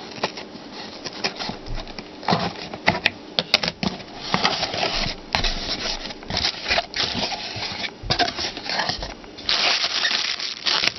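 A cardboard shipping box being opened by hand: tape slit with a folding tool, then flaps pulled back, with irregular clicks, scrapes and cardboard rustling. A plastic packing bag crinkles near the end.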